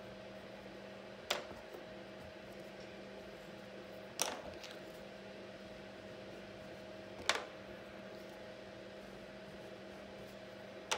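A low steady room hum with a couple of faint tones, broken by three short sharp clicks about three seconds apart.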